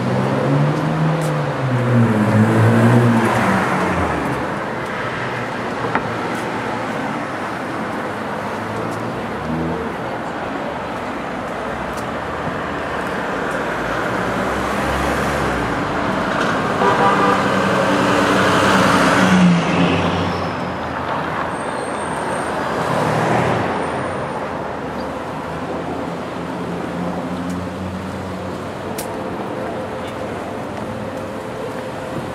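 City street traffic: cars driving past, the noise swelling as vehicles go by a few seconds in and again a little past the middle.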